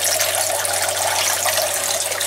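Three thin streams of water pouring out of drain hoses from planter cans and splashing steadily into the water of a fish tank. This is gravity drainage of plant watering, which aerates the tank water a little.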